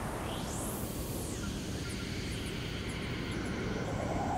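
Synthesizer whoosh from the intro of an electronic track: a hissing sweep rises and falls once in the first second and a half, then settles into a steady airy wash with faint high chirps near the middle.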